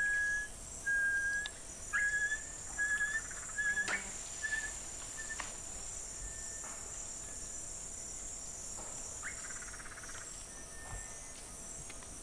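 Jungle ambience: a steady high-pitched chorus of insects, with a bird whistling a series of about seven short notes at one pitch over the first five seconds, each shorter and fainter than the last.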